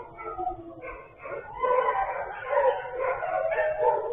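Dogs howling and whining together, several drawn-out wavering howls overlapping. They fade briefly about a second in, then swell louder.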